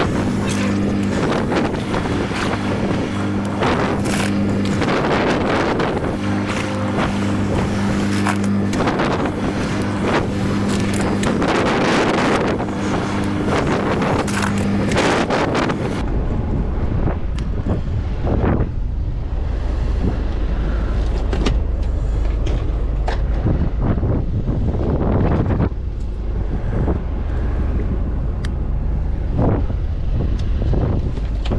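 Small fishing boat's engine running under way, a steady hum under wind buffeting the microphone and water rushing past the hull. About halfway through the sound changes abruptly to a lower, duller engine rumble with wind noise.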